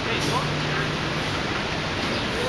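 Steady rushing noise with faint voices in the background and a low, steady hum lasting about a second.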